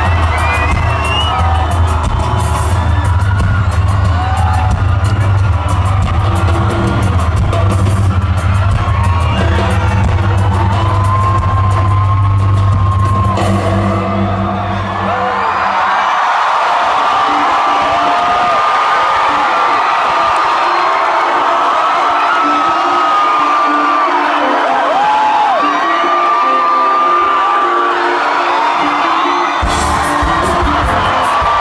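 Concert opening music with a heavy, steady deep bass, which stops about halfway through; a large concert crowd then cheers and screams, with high shouts rising and falling, until the band's music comes back in at the very end.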